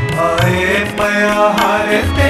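Sikh shabad kirtan: male voices singing a devotional hymn over held harmonium chords, with low tabla strokes underneath.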